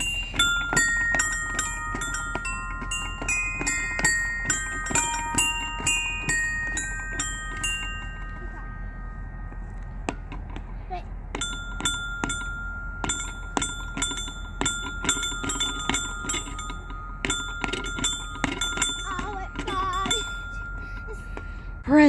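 Electronic bell-like notes from a step-on musical floor panel, sounded one after another as a child steps on its tiles. Each note starts sharply and rings on, some held long, with a pause of about three seconds partway through.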